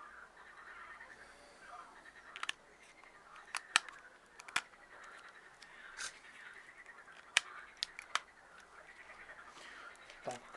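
Sharp plastic clicks and snaps as a battery is pushed into a small camcorder and its battery cover is fitted. There are about nine clicks, some in quick pairs, the loudest about halfway through and again a couple of seconds later.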